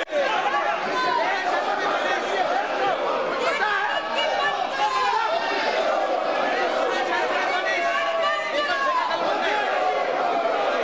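Uproar in a large parliamentary chamber: many members shouting and talking over one another at once, a steady din of overlapping voices.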